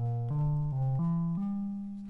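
Low bass notes tapped out on the Orphinio iPad music app's Bass Thumb palette: single notes in quick succession, about three a second, stepping up in pitch and ending on a held note.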